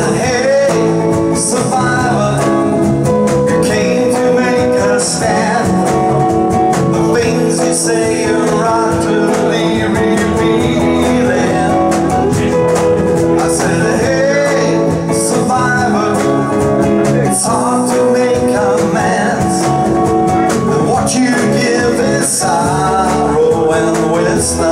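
Live band music: guitar, electric bass and cajon playing a steady, continuous passage of a song.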